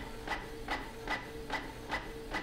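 Canon inkjet printer printing a page: the print-head carriage moves back and forth in an even beat of about two and a half strokes a second, over a faint steady motor tone.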